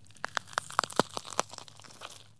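Logo sting sound effect: a quick run of about ten sharp, irregular crackles and clicks over two seconds.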